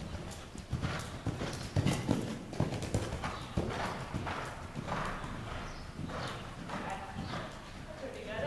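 Hoofbeats of a Thoroughbred gelding cantering on deep sand arena footing, a few soft thuds a second in an uneven rhythm.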